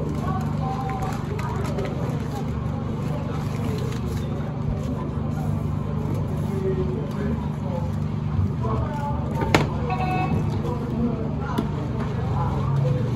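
Indistinct background voices over a steady low hum, with brown pattern paper being handled and a single sharp click about nine and a half seconds in.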